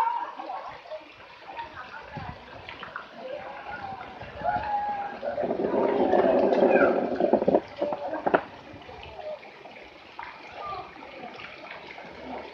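Water splashing and lapping in a swimming pool, with children's voices in the background. A louder stretch of splashing and voices comes from about five seconds in to about seven and a half.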